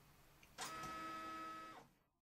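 A small motor whining steadily with several held tones: it starts suddenly about half a second in, runs for just over a second, then fades out.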